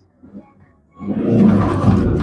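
Proton Iswara's 4G13 four-cylinder petrol engine revved hard from about a second in, a loud steady engine note as the car moves off. The test is for the car cutting out when pulling away.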